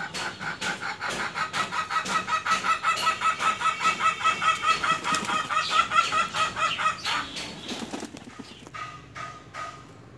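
A chicken calling in a rapid, even run of clucks, about five a second, growing louder over several seconds and breaking off about seven seconds in.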